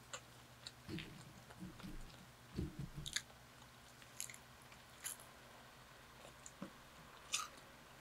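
Close-miked eating sounds: biting and chewing home-fried french fries, with a few sharp crisp clicks spaced a couple of seconds apart and softer mouth sounds between.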